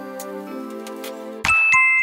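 Soft background music, then about one and a half seconds in, a bright two-note chime sound effect, the second note lower, ringing on.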